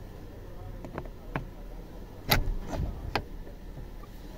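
Flat-head screwdriver tip clicking and scraping against the plastic steering-column trim and the airbag release catch, probing for the catch that frees the driver's airbag: a handful of short sharp clicks, the loudest a little past halfway, over a low steady hum.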